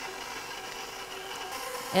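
KitchenAid stand mixer running steadily, its motor driving the flat beater through dry flour mix in a steel bowl.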